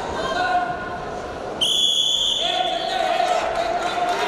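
Referee's whistle blown once, a steady high-pitched blast of just under a second, starting a little before halfway through, to stop the action on the mat. Voices talk and call out in the arena around it.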